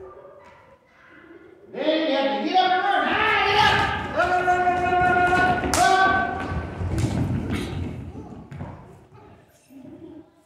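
A group of children shouting and squealing together, with feet thudding on a wooden floor as they scramble up and move about. It starts about two seconds in and dies away near the end.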